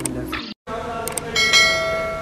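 Subscribe-button sound effect: a few mouse clicks, then a bright bell chime about one and a half seconds in that rings on and fades. Before it, background guitar music cuts off suddenly.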